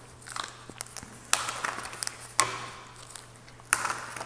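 A deck of oracle cards being shuffled by hand: three sharp bursts of card flutter, each trailing off over about half a second, with lighter rustling of cards between them.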